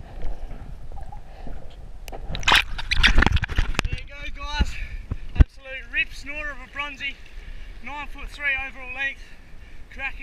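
Seawater sloshing and splashing around an action camera held in the shallows, loudest in a burst about two and a half to four seconds in, followed by a man's voice calling out in short repeated sounds.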